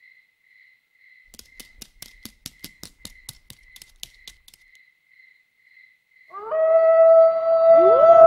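A cartoon dog's howl, the fox-like cry of a dog possessed by a ghost: a long loud wail that starts about six seconds in, swoops up and holds. Before it comes a quick run of light clicking taps, over a faint chirping that pulses about twice a second.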